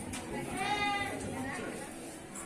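A high-pitched voice calls out once, for about half a second around the middle, over a low hubbub of voices.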